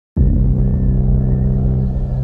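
A steady low droning rumble with several held low tones, cutting in abruptly just after the start.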